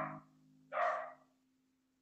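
Final acoustic guitar note ringing out and fading, with two short, hoarse noisy bursts: one just at the start and another about a second later.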